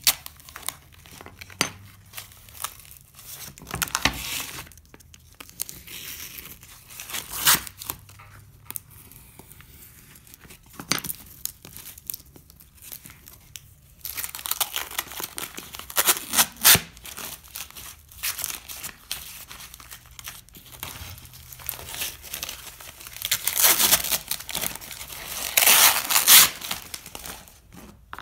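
Sandblasting resist and its paper backing being peeled and torn off a sheet of glass, crinkling and tearing in irregular bursts, loudest near the end.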